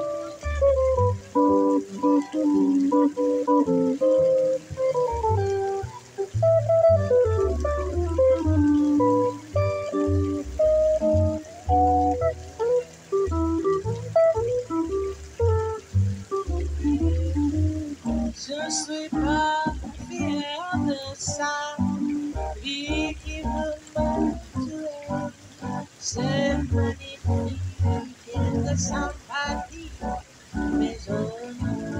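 Instrumental passage on semi-hollow electric guitar and upright double bass: the guitar plays a moving single-note line over plucked bass notes, and turns to shorter, choppier figures in the second half.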